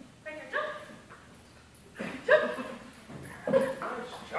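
A dog barking three short times, spaced irregularly over a few seconds.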